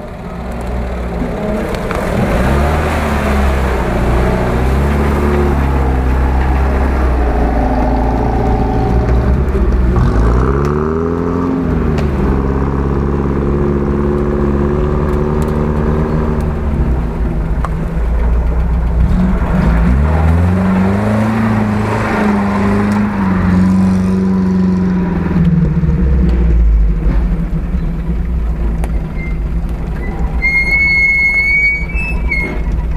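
UAZ-469 off-roader's engine running under load as it crawls through a muddy creek bed, revving up about a third of the way in and again about two-thirds of the way in, holding steady in between. The sound fades in over the first couple of seconds.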